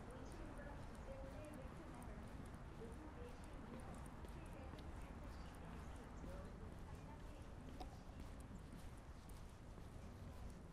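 Footsteps of a person walking at a steady pace on a paved path, faint against a steady low background rumble.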